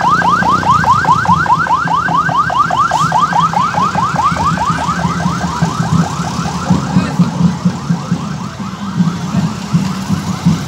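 Police vehicle siren in a rapid yelp, sweeping in pitch about five times a second, growing fainter through the second half.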